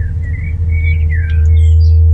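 A bird chirping a run of short calls that glide in pitch, over a loud, steady low rumble.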